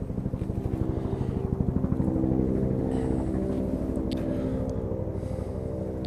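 An engine running steadily, a low drone with a fast even pulse that swells a little midway and eases off again.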